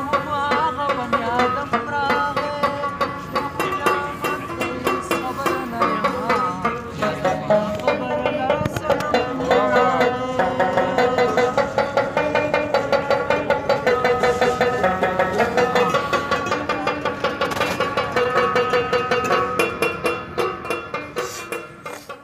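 Live Pashto folk music: a rabab plucked in quick, rhythmic strokes over a clay-pot mangay drum beating a steady pulse.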